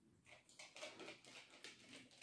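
Near silence with faint small crackles and ticks: a crumbly shortcrust pastry basket being broken apart by hand.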